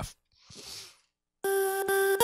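Electronic music playback from an FL Studio project starts about one and a half seconds in: a synth holds one steady pitched note with its overtones, with a click shortly after.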